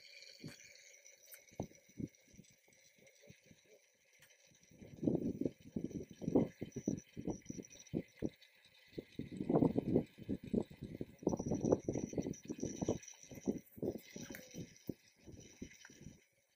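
Irregular low rumbling thumps of wind and handling on a handheld camera's microphone, loudest in two stretches from about five seconds in.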